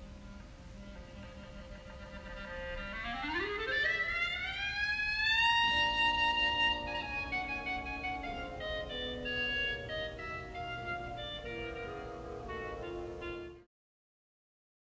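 Clarinet playing: a low held note, then a long glissando sweeping smoothly up to a high held note, followed by a melody of shorter notes moving downward. It cuts off suddenly just before the end.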